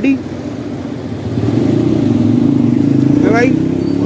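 Generator engine running with a steady hum that grows louder about a second in.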